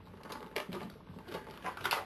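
Hard plastic parts of an Iron Monger action figure clicking and clacking together as a piece is fitted onto it by hand: a run of light, irregular clicks that come thicker in the second second.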